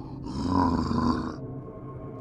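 A man's harsh, throaty zombie growl lasting about a second, which stops abruptly.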